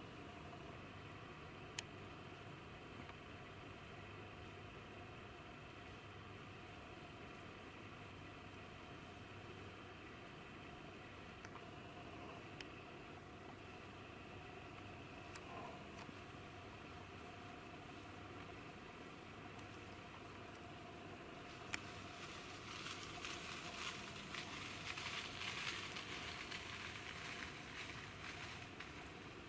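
Faint, steady outdoor background hum with a couple of sharp clicks, and a spell of rustling in the last six seconds or so.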